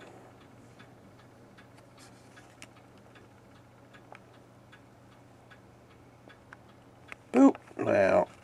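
Quiet room tone with faint, scattered light ticks over a low steady hum. Near the end comes a brief, louder vocal sound from a man, just before he starts speaking.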